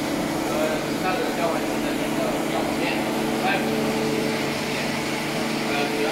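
Steady machinery hum with several held low tones, from equipment running in a factory test lab, with people's voices talking over it.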